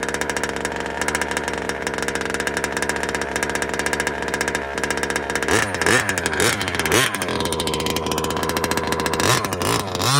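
Two-stroke gas engine of a Losi DBXL 2.0 1/5-scale RC buggy idling steadily, then blipped three times about halfway through, and revved hard near the end as the buggy takes off.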